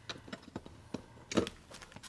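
Faint clicks and light rustles of a laminated vellum cash envelope being handled and pressed flat in a binder, with one sharper tap about one and a half seconds in.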